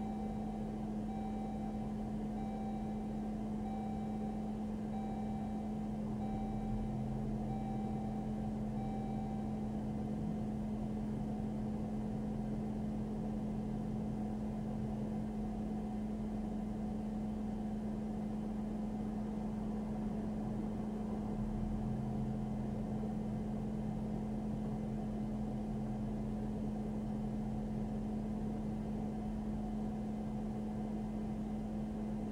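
Steady low hum inside a parked patrol car with its engine running. A faint electronic tone beeps about once a second for the first ten seconds or so, then stops.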